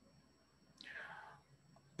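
Near silence, with one faint breath, a short inhale, about a second in.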